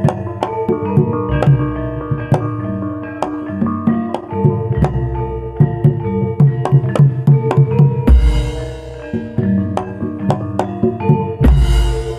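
Live Javanese gamelan ensemble playing jaranan dance music: ringing metallophone tones over a busy run of drum strokes. Two deep, crashing accents come about eight seconds in and near the end.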